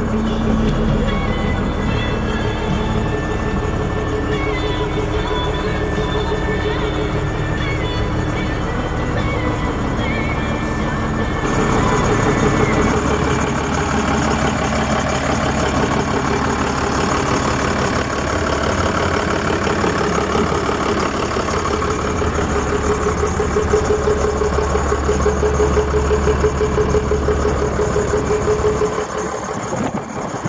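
Background music playing steadily, changing to a fuller section about eleven and a half seconds in.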